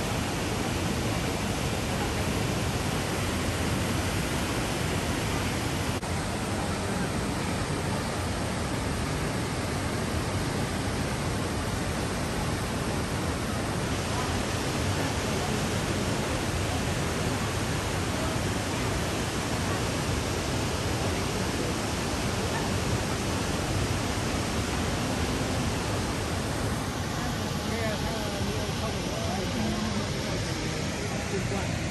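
Waterfall and rapids: white water pouring over and between boulders, a loud, steady rush.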